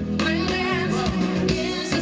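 Live pop band playing over a concert PA, with a singer's wavering vocal line above guitar and a steady drum beat.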